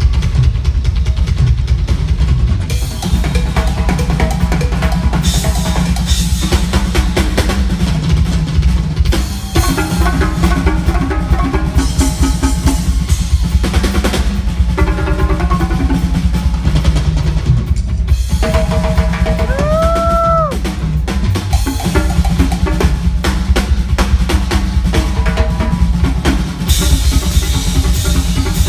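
Live drum kit and hand percussion (congas and timbales) playing a loud, dense drum-and-percussion duet, with heavy kick drum, snare rolls and rimshots. About twenty seconds in, a short high note rises and holds for about a second over the drumming.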